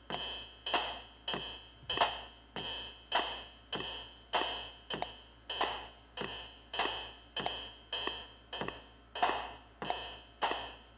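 Artiphon Orba in drum mode playing a looped electronic beat through its small built-in speaker, with cymbal hits being tapped in on top. The result is a steady pattern of about two sharp hits a second, each with a short ringing high tone.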